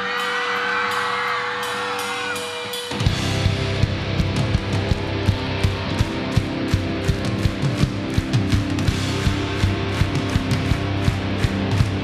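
Live alternative-rock band opening a song: a single steady held tone for about three seconds, then the full band comes in, with electric guitars, bass and a drum kit playing a steady driving beat.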